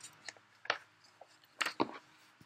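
Pages of a picture book being turned and handled: a few short, sharp paper flaps and rustles, one about two-thirds of a second in and two close together near the end.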